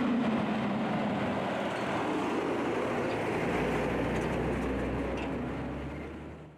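City street traffic, with a heavy truck's engine running close by as it moves past. A low hum joins about halfway through, and the sound fades out at the end.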